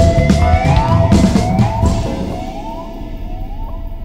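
1974 Fender Telecaster Custom played with an E-Bow and slide through a delay: a long held note with a rising slide up from it that echoes about once a second, each repeat fainter. The whole sound fades as the solo ends, and the deeper backing drops away about two seconds in.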